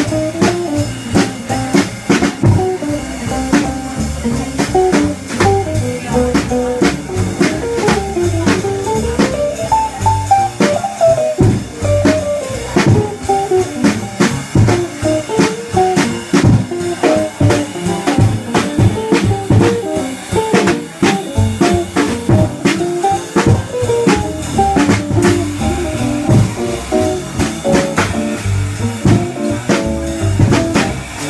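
Live small-group jazz from a quartet of drum kit, guitar, bass clarinet and bass. Sharp drum and cymbal strokes run under a fast, winding melodic line that climbs and falls.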